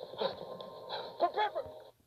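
Short, strained vocal grunts and whimper-like sounds from a man, a few times, over a steady high ringing tone that cuts off just before the end.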